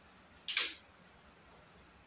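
Folding stock of a PCP air rifle swung open and snapping into its locked position: one sharp clack about half a second in.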